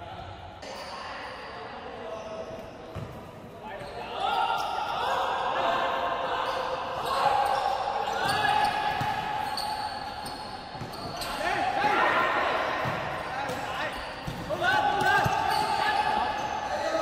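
Futsal ball being kicked and bouncing on a wooden indoor court, the impacts echoing in a large hall, with players' voices calling out over the play.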